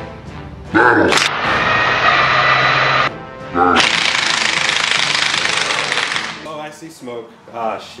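A DeWalt cordless impact driver and a Snap-on cordless impact wrench, locked together socket to socket, hammering against each other in two loud bursts: the first from about a second in to three seconds, the second, louder and brighter, from about four to six seconds. Men's shouts come just before each burst, and voices and laughter follow near the end.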